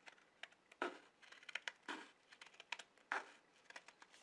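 Scissors cutting through a folded stack of paper: an uneven run of short snips and crisp paper rasps. The three loudest cuts come about a second in, near two seconds and just after three seconds.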